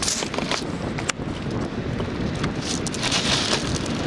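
Wind on the microphone over the steady wash of ocean surf, swelling and easing, with a few short clicks.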